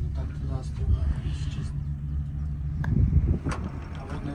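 Steady low mechanical hum of a moving cable car, with a few faint voices and a couple of short clicks near the end.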